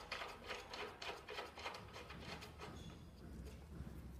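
Faint clicks and rustling of plastic tubing and a funnel being handled as the tube is pushed onto a water inlet fitting, mostly in the first two seconds, over a low steady hum.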